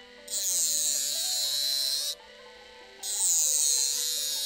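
Small rotary tool (mini drill) grinding the nib of a metal calligraphy pen to shape and thin it, in two passes of about two seconds each with a short break between.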